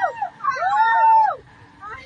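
People shouting a long drawn-out, high-pitched yell, one cry held for nearly a second, jeering at a passing political convoy.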